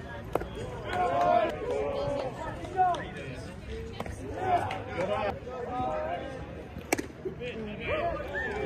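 Voices of people talking and calling out at a baseball game, overlapping throughout. There is a sharp crack about seven seconds in and a smaller click near the start.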